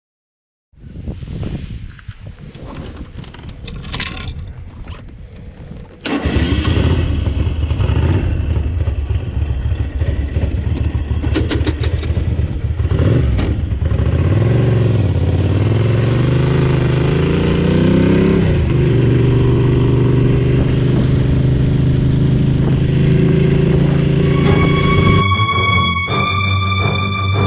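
A V-twin motorcycle engine running on the road, mixed with wind rush. It is quieter for the first few seconds and gets louder about six seconds in. Its note climbs as the bike accelerates, drops back, then holds steady at cruise, and music comes in near the end.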